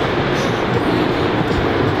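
A loud, steady rushing noise of wind buffeting the camera microphone.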